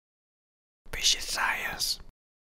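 A short whispered voice, lasting about a second and starting about a second in, ending on a hiss.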